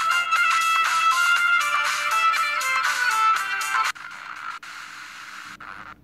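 Music from an FM broadcast playing through a Sony Ericsson mobile phone's built-in FM radio, tuned to 95.1 MHz. About four seconds in it cuts off abruptly as the radio is tuned up the dial, leaving a quieter, hissy signal.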